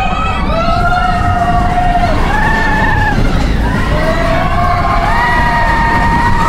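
Several riders on the Expedition Everest roller coaster screaming and yelling in overlapping held, gliding cries over the rumble of the train running on its track.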